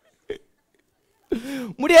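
Speech only: a short pause with one brief faint vocal sound, then a man's voice speaking in an animated, rising tone from about a second and a half in, loudest near the end.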